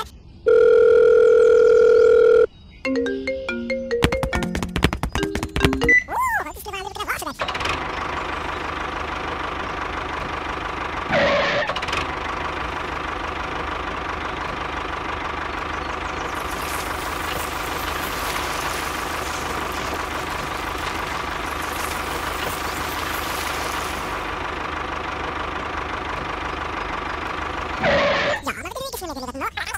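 Dubbed electronic sound effects and music: a loud, steady beep-like tone for about two seconds, then a short jingle of stepped notes and a quick flurry of clicks, followed by a long, steady hum held at one pitch.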